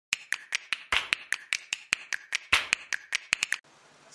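A quick, even series of sharp clicks or taps, about five a second, with two louder hits among them; it stops suddenly about three and a half seconds in.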